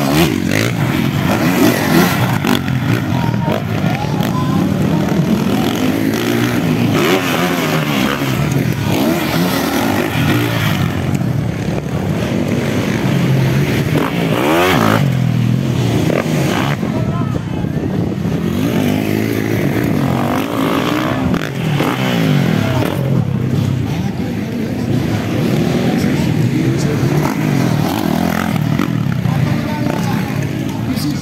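Motocross dirt bike engines revving up and falling back again and again as the bikes race along the track and take the jumps, with a voice talking over them.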